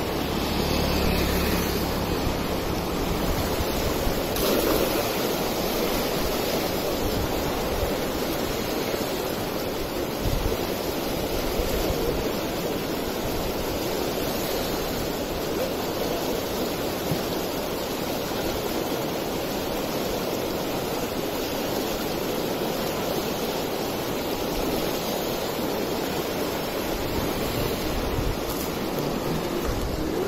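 Fast-flowing floodwater rushing and churning through white-water rapids, a steady noise of turbulent water.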